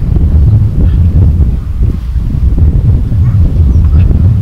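Wind buffeting the microphone: a loud, low rumble that rises and falls in gusts.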